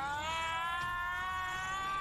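A single long, high-pitched whine that rises slowly and steadily in pitch.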